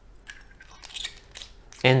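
Aluminium Kaweco Supra fountain pen twisted at its threaded joints: a run of small, quick clicks and scratchy metal-on-metal rasps as the sections are screwed.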